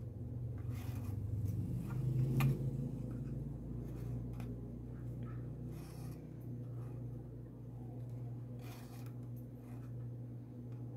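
Macramé threads rubbing and scraping as they are drawn through and pulled tight into knots, in several short strokes, the sharpest a little over two seconds in. A steady low hum runs underneath.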